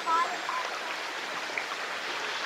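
Steady rushing of a flowing rainforest creek running into a pool.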